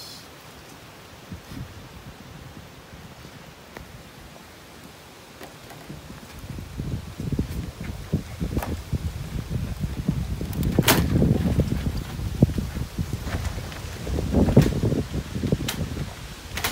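Geothermal fumaroles (ausoles) and boiling hot-spring pools, heard as a low rumbling, bubbling noise that builds up from about six seconds in. It is broken by irregular pops and a few sharp clicks and is loudest near the end.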